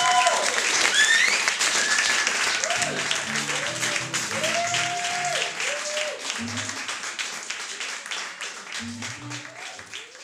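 Audience applauding and cheering with whoops after a live band's song, while a few low instrument notes sound from the stage; the whole gradually fades down.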